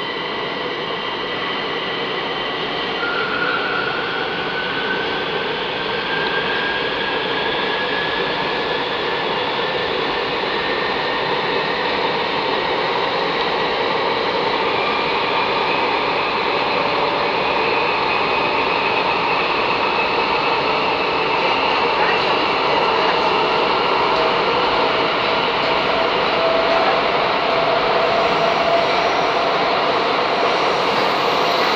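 Metro train heard from inside the carriage while it stands at a station platform: a steady rushing hum of the train's equipment with faint whines that rise slowly in pitch, the whole growing gradually louder.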